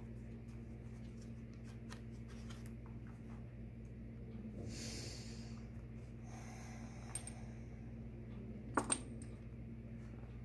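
Paper cards being spread and fanned across a tabletop, faint: soft slides and small ticks, with two short rustling sweeps in the middle. Two sharp clicks come close together near the end.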